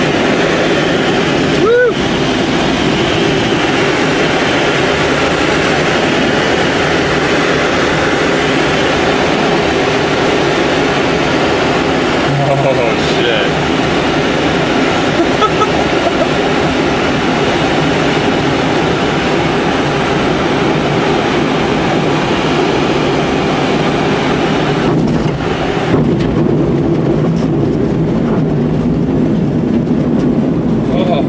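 Steady rushing airflow noise in a glider's cockpit during a low final approach and landing, with a sharp loss of its high hiss about 26 seconds in as the glider slows.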